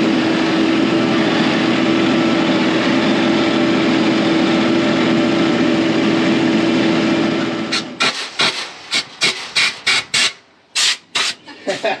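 Compact tractor engine running steadily under way, with a steady hum. About eight seconds in it gives way to a quick series of short scraping strokes in a grain drill's metal seed box as it is cleaned out.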